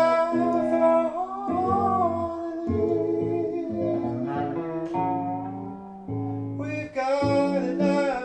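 Live song: a man singing long held, sliding vowel notes over plucked guitar notes. The voice slides upward about a second and a half in.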